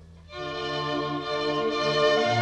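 Bowed string music with sustained violin notes over low cello-range notes. It is soft at first, then a new phrase comes in about a third of a second in and grows louder.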